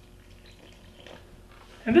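Water poured from a glass measuring cup into a bowl of gingerbread batter, faint.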